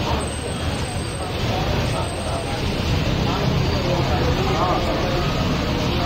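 An engine running steadily with a low rumble, with people talking over it.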